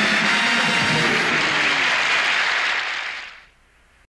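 Studio audience applauding, fading out about three seconds in.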